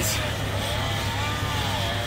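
Steady low drone of the bucket trucks' engines idling at the work site.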